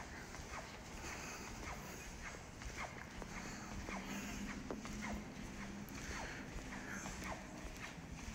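Faint footsteps walking along a corridor, about two steps a second.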